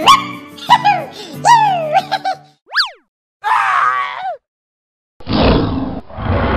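Cartoon sound effects over background music: high, pitch-sliding voice sounds, then a quick boing-like glide up and back down about three seconds in, and a short chattering burst. After a moment of silence, a loud dinosaur roar starts near the end.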